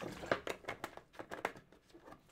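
Water being gulped from a large plastic water jug, the thin plastic crinkling and clicking in a string of short, irregular sounds.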